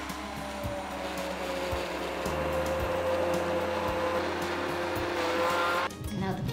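Immersion (stick) blender running in a pot of lentil soup, pureeing it. Its motor whine dips slightly in pitch over the first couple of seconds, holds steady, then cuts off just before the end.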